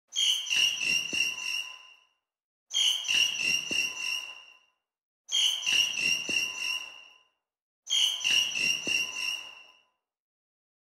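A recorded bird call looped four times, one repeat about every two and a half seconds, each fading out in a reverb tail. Under each call runs the faint steady sound of a distant garbage truck, caught in the same recording and in the same key as the bird.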